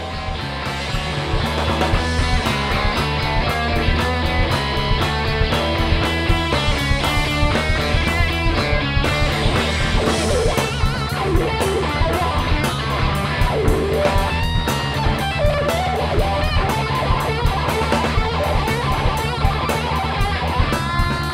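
Rock band playing live: Gibson electric guitar, electric bass and drum kit, with steady cymbal strokes and a driving beat. The band fades up over the first couple of seconds, and the guitar bends notes in the second half.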